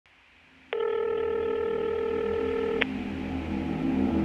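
A steady electronic beep tone sounds for about two seconds, starting abruptly under a second in and cutting off sharply, over a low synthesizer drone that carries on afterwards.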